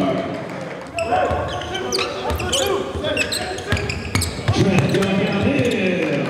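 A basketball bouncing on a gym floor amid the voices of players and spectators echoing in a large gym, with short high sneaker squeaks in the middle.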